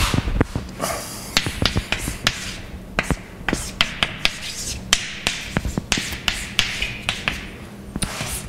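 Chalk writing on a blackboard: sharp taps as the chalk strikes the board, many in quick succession, mixed with short scratching strokes.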